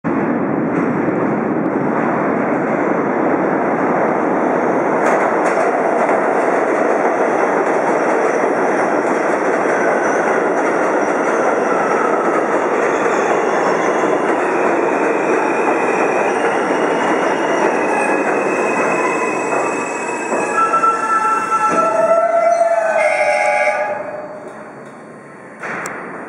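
New York City Subway R160A-2 train arriving at a station: a loud, steady rumble of wheels on rail as it approaches and runs in, then, about 20 s in, the pitched whine and squeal of braking, its tones falling slightly as the train slows to a stop.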